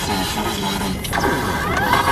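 Car driving on a dusty dirt road, heard from inside the cabin: steady road and wind noise.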